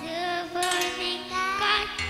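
A child singing into a microphone over electronic keyboard accompaniment, the voice gliding up and down through a PA.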